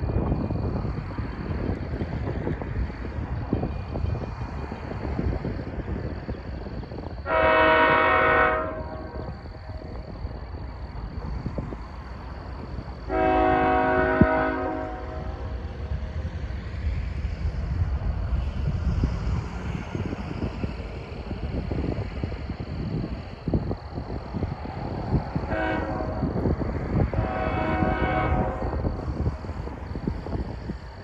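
Multi-chime air horn of a CSX GE ES44AH locomotive leading an approaching freight train, sounding two long blasts, then a short and a long one, the grade-crossing signal. Underneath runs a steady low, gusty rumble.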